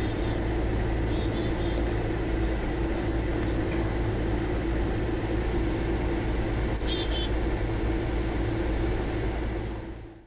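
Steady outdoor background hum and low rumble, with a few brief high chirps scattered through it. The sound fades out near the end.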